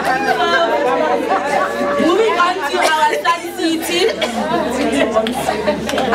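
Several people talking over one another in a room: continuous overlapping chatter, no single voice clear.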